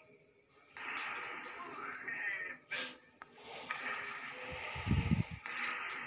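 A person breathing heavily in long, noisy breaths, three in a row of about two seconds each. There is a short sharp click just before the middle, and a low thud about five seconds in.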